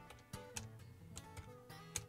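Computer keyboard keys tapped about five times, separate light clicks as a word is typed, over quiet background music.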